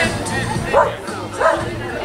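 A dog barks twice, about two-thirds of a second apart, over background chatter.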